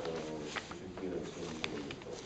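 A man's low voice in drawn-out, hesitant sounds between words, with paper rustling and a few sharp clicks as booklets and sheets are handled.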